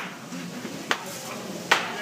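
Small-bubble bubble wrap being squeezed by hand, bubbles popping with sharp snaps: one near the middle and one near the end.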